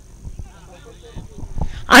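Quiet open-air ground ambience: faint distant voices, a few soft knocks and a steady faint high whine, until loud close speech begins near the end.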